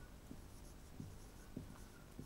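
Marker pen writing on a whiteboard, faint, with a few soft taps of the tip against the board and light squeaks.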